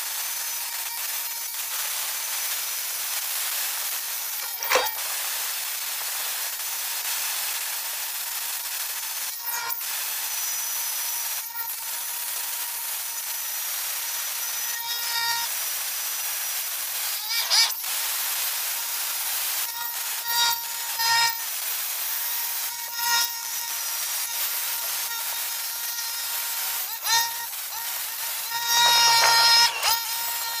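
Small cordless angle grinder with a sanding disc running against a cast-iron brake caliper, stripping old paint and rust down to bare metal. It is a steady grinding hiss with a faint whine, broken by a few brief dips where the disc leaves the metal.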